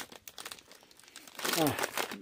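A sealed plastic snack bag of pretzels crinkling in a hand as it is moved, in brief irregular crackles during the first second and a half. A man's voice says "oh" near the end.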